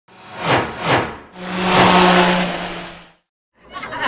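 Two quick whooshes followed by a longer swelling whoosh with a low steady hum under it, fading out about three seconds in.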